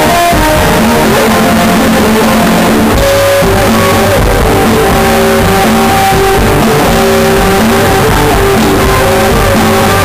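A live rock band playing loudly through a PA, led by an electric guitar played on a double-neck, over bass guitar and drums. The guitar works through held and repeated notes, with no singing.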